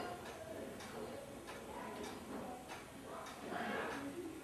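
Pendulum wall clock ticking, with a tick roughly every second.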